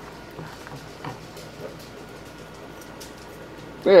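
Faint bubbling and small pops of thickened watermelon juice boiling down in a pot, with light stirring from a wooden spoon. A man's voice comes in briefly at the end.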